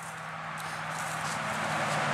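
Outdoor background noise: a steady low hum under a broad hiss that slowly grows louder, with no digging strikes or detector tones standing out.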